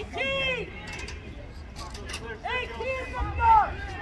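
Unintelligible shouted calls from people at a soccer match. A call comes about a second in, then several more in the second half, the loudest near the end.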